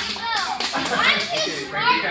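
Children's voices talking over one another, high-pitched and overlapping.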